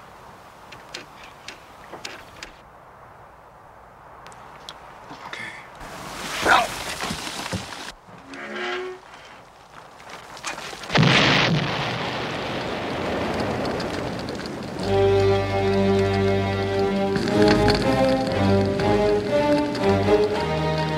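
A Citroën 2CV going over a cliff and exploding: small creaks and knocks, a heavy crash about six seconds in, then a loud explosion about eleven seconds in with a long rumbling tail. Music comes in for the last few seconds.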